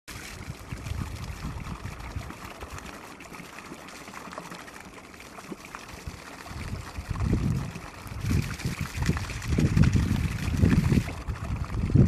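Wind buffeting the Samsung Galaxy Camera's built-in microphone in irregular rumbling gusts that grow stronger from about halfway. Underneath runs a steady hiss of falling water from garden water spouts.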